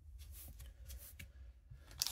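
Faint handling noise of trading cards and a foil card pack: a few soft rustles and light ticks.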